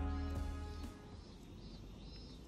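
Background music with plucked, guitar-like notes fades out about halfway through, leaving a faint outdoor street background.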